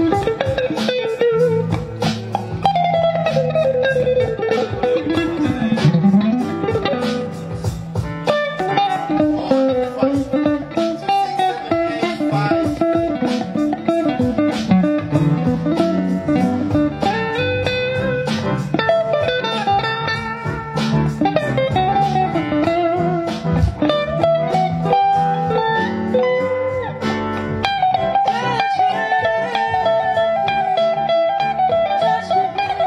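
Telecaster-style electric guitar played continuously in single-note melodic lines, fast picked runs mixed with notes that glide up and down in pitch.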